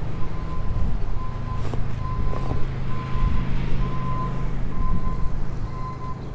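Steady low rumble of a fat-tire e-bike riding along a paved path, with a high electronic tone from a vehicle's backup alarm pulsing about once a second.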